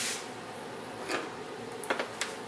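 Faint steady hiss, with two soft, short sounds, one about a second in and one near the end.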